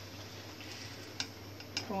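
Two light metallic clicks about half a second apart, from a steel slotted spoon knocking against the pan and plate while fried puris are lifted out, over a faint steady low hum.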